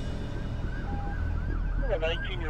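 Emergency vehicle siren in a fast yelp: short rising sweeps in pitch, about three a second, starting about half a second in, over a steady low rumble.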